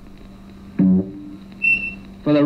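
Plucked-guitar background music from an educational animation's soundtrack, played over room speakers, with a short high beep near the end.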